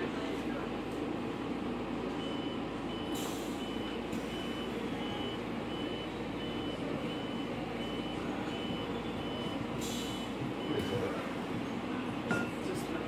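A high electronic beep repeats about twice a second from about two seconds in until near the end, over a steady machinery hum. Twice, about three seconds in and again near the end, there is a short ripping sound as bandage tape is torn.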